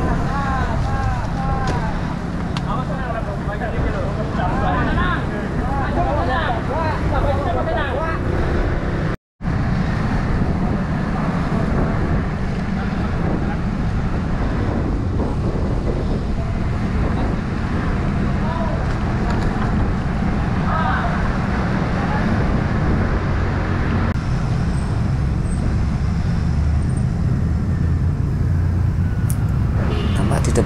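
Steady wind and road rumble on a camera riding a bicycle through town traffic, with indistinct voices of other riders talking over the first nine seconds and again briefly later. The sound cuts out for a split second about nine seconds in.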